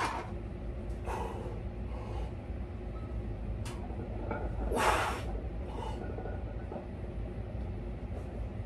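A weightlifter's forceful breaths and exhales during a heavy barbell bench press: short sharp rushes of breath, the loudest about five seconds in, with a brief click shortly before it, over a steady low hum.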